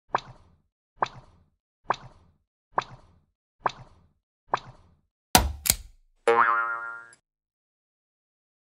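Cartoon 'boing' hop sound effects for an animated one-legged umbrella character: six evenly spaced springy hops a little under a second apart, then two loud sharp hits and a short ringing tone that fades out.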